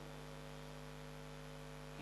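Faint, steady electrical mains hum picked up through the microphone and sound system: a low, even buzz with no change.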